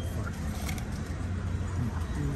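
Steady low background rumble with faint voices near the end.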